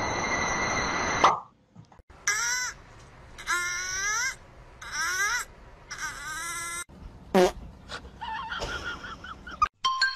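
A cat chirping in four short bursts about a second apart, each a run of quick rising chirps, then one loud falling cry and a few softer calls. At the start a steady hiss with high whining tones cuts off a little over a second in.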